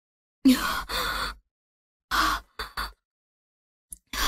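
A person's short wordless vocal sounds in three brief bursts: the first about a second long, then two shorter ones close together, with dead silence between them.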